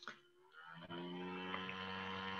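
Faint steady electrical mains hum with a buzzy edge, coming in about half a second in after near silence. A brief soft click sounds right at the start.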